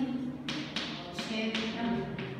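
Chalk tapping and scraping on a blackboard as handwriting is put down, about five sharp taps in two seconds.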